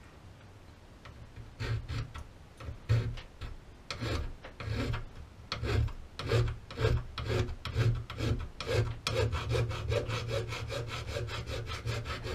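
Half-round hand file rasping back and forth on the edge of an aluminum shotgun receiver's loading port, beveling it. The strokes begin about a second and a half in, come irregularly, then quicken to about four short strokes a second near the end.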